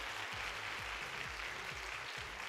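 Audience applauding, a steady, fairly soft wash of clapping.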